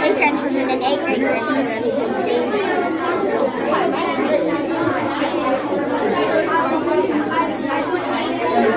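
Indistinct chatter of many people talking at once, with no one voice standing out.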